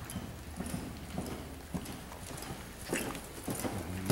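Hoofbeats of a ridden horse on soft sand arena footing: dull thuds in a steady rhythm, about two a second, the loudest a little before the end.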